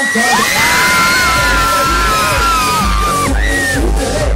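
Loud live concert music heard close to the stage: long held shouted notes over the music, then a heavy kick-drum beat comes in about a second and a half in, pounding about twice a second.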